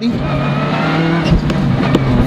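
Skoda rally car's turbocharged four-cylinder engine heard from inside the cockpit, running hard at full throttle with its note slowly rising.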